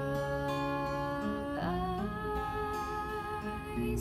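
A woman's voice holding long, wavering sung notes, with one slide in pitch about halfway through, over acoustic guitar.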